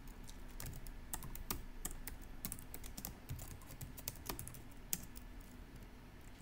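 Typing on a computer keyboard: irregular clicks of keystrokes as a line of code is entered.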